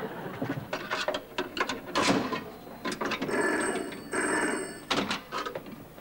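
A run of clicks and knocks, then a telephone bell ringing twice in quick succession, each ring under a second long.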